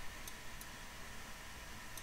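A few faint computer mouse clicks over low room hiss.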